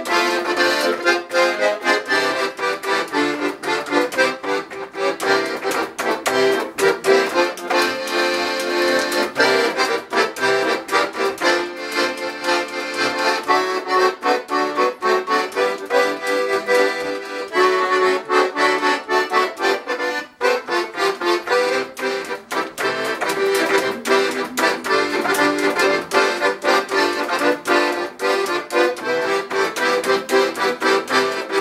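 Paolo Soprani piano accordion played solo: a lively tune with full chords and quickly changing notes, with a brief break about twenty seconds in.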